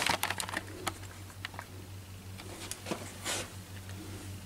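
Scattered light clicks and taps of a handheld camera being handled as its holder walks, over a steady low hum, with a brief rustle about three and a half seconds in.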